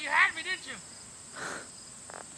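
A voice is heard briefly in the first second, over a steady high-pitched drone of field crickets that runs throughout.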